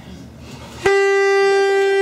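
A plastic toy horn blown in one long, steady, buzzy note. It starts suddenly a little under a second in and is still sounding at the end.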